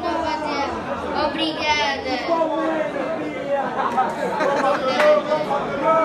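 Speech and crowd chatter: a woman's voice at a microphone with people talking around her.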